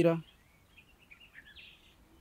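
A man's voice trails off, then a quiet pause with faint, scattered bird chirps in the background.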